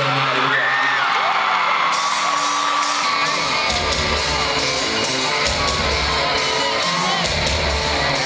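Live rock band, heard from the arena seats, opening a song: a held chord gives way to heavy bass and drum hits coming in about three and a half seconds in, over a cheering, whooping crowd.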